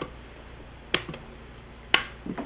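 Two sharp clicks about a second apart as the power switch of a homemade keypad programmer box is turned on.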